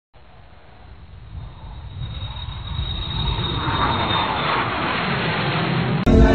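A rushing noise that swells steadily louder throughout, then cuts off abruptly at the end.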